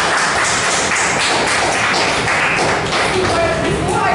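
A room of people applauding, a dense patter of many hands clapping that dies away about three seconds in. Then a woman's voice starts speaking.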